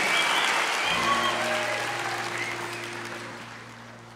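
Large audience applauding, the clapping dying away steadily. From about a second in, a steady low musical note is held underneath.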